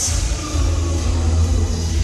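Live music over a hall PA: a male solo singer on a microphone with band accompaniment and a heavy, steady bass.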